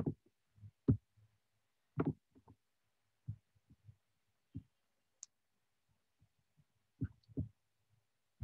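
Soft, irregular low thumps and knocks coming through a video-call line, with a brief high-pitched blip about five seconds in.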